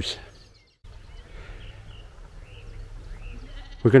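Sheep bleating faintly in the distance over a low, steady background hum, after the sound drops out briefly near the start.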